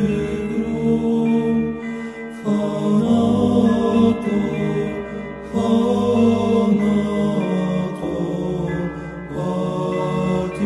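Orthodox church chant as background music: voices holding long notes over a low sustained tone, moving to a new note every second or two.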